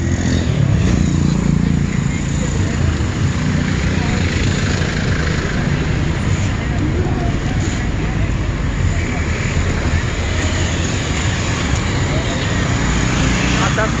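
Steady din of heavy city street traffic: engines of queued cars and passing motorcycles, with people's voices in the background.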